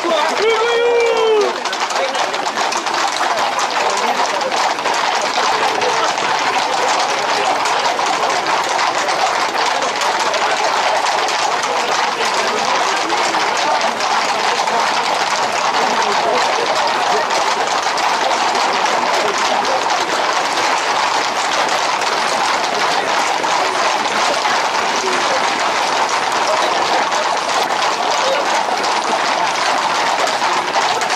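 Hooves of a tight pack of Camargue horses clattering continuously on an asphalt road, mixed with the shouting of a crowd running alongside. A loud shouted call comes about a second in.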